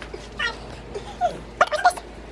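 A toddler's short, high-pitched wordless vocalizations: a couple of brief babbles, then a louder squealing burst near the end.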